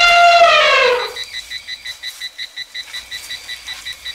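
An elephant's trumpeting call, sliding down in pitch as it ends about a second in. Then a quieter high insect chirping, pulsing evenly about five times a second.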